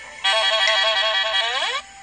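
Cartoon sound effect from a children's storybook app: a loud, high pitched warbling tone that wavers rapidly, then glides upward and cuts off sharply.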